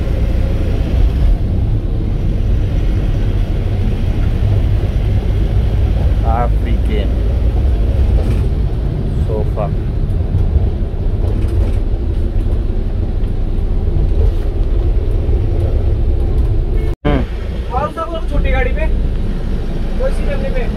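Cabin noise inside a moving Force Traveller van: a steady low diesel engine and road rumble, with brief voices now and then and a short break in the sound near the end.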